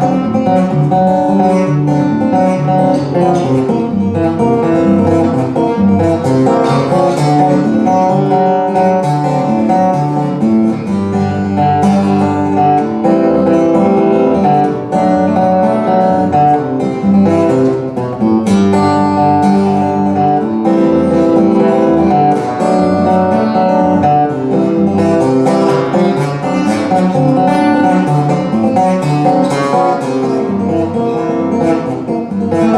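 Solo acoustic guitar played live as an instrumental, a continuous run of notes without a break and without singing.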